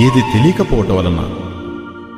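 Devotional singing of a Sanskrit verse: a voice sliding through a wavering, ornamented phrase over a steady instrumental drone, fading away near the end.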